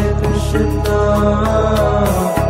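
Devotional Krishna hymn music: a long sung note held over a steady drone.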